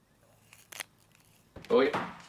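A man's voice says "Oi" sharply near the end. Before it there is faint room tone with a low hum, broken by a brief click or rustle under a second in.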